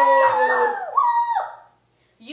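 Voices singing a short jingle, "ba-ba, woo," the "woo" sliding down in pitch, cutting off about a second and a half in.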